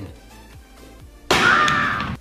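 Soft background music, then a little over a second in a sudden loud crash with a ringing edge that lasts under a second.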